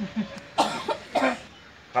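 A person's voice making three short, sharp non-speech bursts about half a second apart, then a brief lull.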